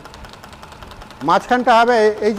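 Wood lathe running steadily and faintly, spinning a wooden spindle with no tool cutting. A man starts speaking a little past halfway and his voice is louder than the lathe.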